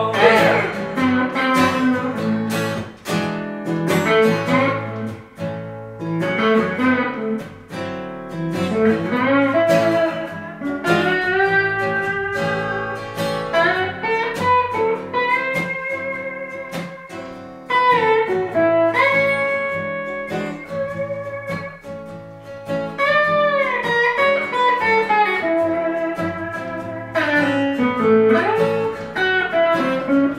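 Blues instrumental break on two guitars: an amplified electric guitar plays a lead line full of bent, gliding notes over a strummed acoustic guitar.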